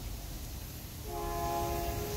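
A train horn sounding one steady chord of several tones for a little over a second, starting about a second in.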